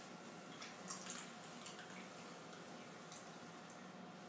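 Wet clay squelching faintly under the hands on a spinning electric pottery wheel as a ball of clay is first rounded and centered, with a few soft wet clicks in the first two seconds over a low steady hum.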